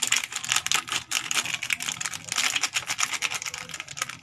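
Plastic seasoning sachet crinkling as it is squeezed and shaken out over a pot: a dense, rapid run of crackly clicks that cuts off suddenly at the end.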